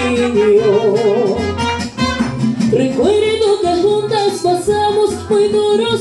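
Mariachi band playing a slow ballad: guitars strum chords under a melody line with vibrato that steps up in pitch about halfway through.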